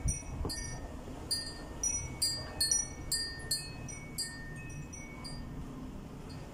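Chimes tinkling: light, irregular high-pitched strikes with short ringing tones, busiest in the first few seconds and thinning out after.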